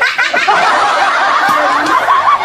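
Children laughing together in high-pitched, unbroken giggles.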